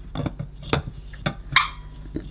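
Bakelite end cap knocking and clicking against the metal cylinder body of a vintage Electrolux Model 60 vacuum cleaner as it is handled and fitted on by hand: a few light, separate clicks.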